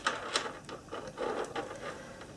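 Faint handling sounds of fingers tying a knot in elastic beading cord: soft rustles and a few small clicks.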